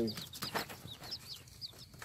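Young chicks peeping: a run of short, high chirps, each falling in pitch, about four or five a second.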